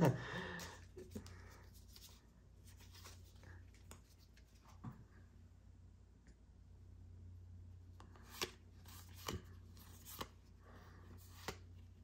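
Faint handling of Pokémon trading cards from a booster pack: soft sliding and rustling with a few sharp light taps as the cards are flipped through, most of them in the second half.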